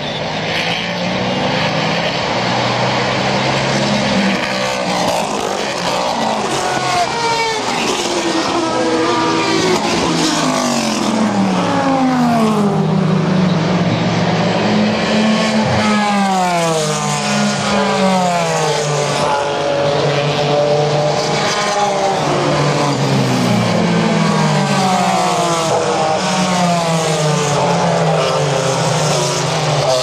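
American Le Mans Series race cars passing one after another on a road course, several engines overlapping. Their notes repeatedly fall and rise as the cars brake, shift and accelerate through the bend and past.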